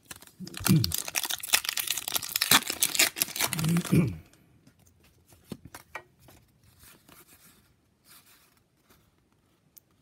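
A foil Pokémon booster-pack wrapper being torn open and crinkled for about four seconds. Then faint rustling and light clicks as the opened pack and cards are handled.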